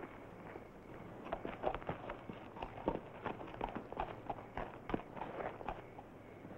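A led horse's hoofbeats and people's footsteps on dirt at a walk: an uneven run of soft knocks and clicks, several a second, starting about a second in.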